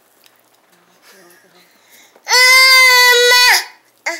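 A baby's loud, high-pitched squeal, held on one pitch for just over a second about two seconds in and dropping off at the end.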